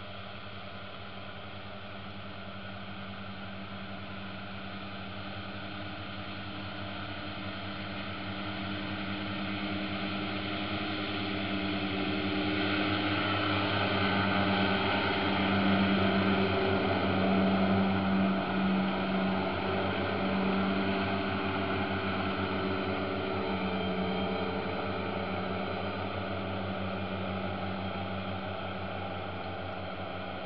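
A Krone self-propelled swath mower running as it mows: a steady engine sound that grows louder as the machine approaches, is loudest as it passes close about halfway through, and then fades as it moves away.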